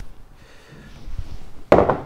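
A glass bowl being set down on a countertop: faint handling noise, then a single sharp knock near the end.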